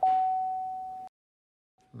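An electronic chime: a single mid-pitched ding that fades over about a second, then cuts off abruptly.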